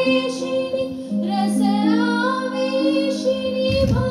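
Women's voices singing a slow, ornamented Indian classical song, over long held accompanying notes that change pitch in steps. A short low thump comes just before the end.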